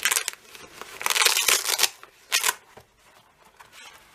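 Fabric screwdriver pouch being unfolded and opened by hand, with three short bursts of cloth rustling and scraping. The longest comes about a second in.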